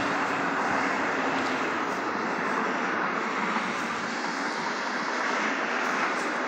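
A steady, even rushing noise that holds at one level throughout, with no distinct knocks, tones or other events.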